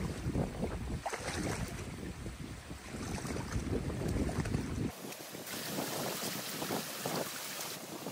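Wind noise on the microphone over water sloshing as a rake is worked into a beaver dam's sticks. About five seconds in this switches abruptly to a steady hiss of water running through a breach in the dam.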